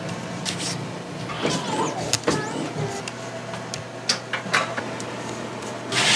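Steady low machine hum that drops a little lower about three seconds in, with scattered sharp clicks and knocks of shirts and screens being handled at a screen-printing press.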